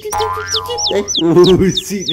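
A cartoon 'boing' sound effect rising and then falling in pitch in the first second. Under it, the high peeping of a baby chick goes on throughout, about four peeps a second.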